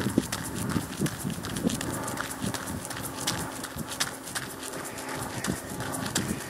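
A jogger's running footsteps, a quick steady rhythm of footfalls, heard through a hand-held phone that jostles with every stride.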